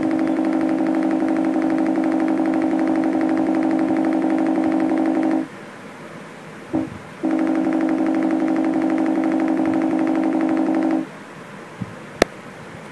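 A MacBook Pro's system alert tone going off over and over in a rapid, unbroken stream while a kitten's paw rests on the keyboard, as if a held key were triggering the alert on every repeat. It comes in two runs of about five and four seconds, with a single short beep between them.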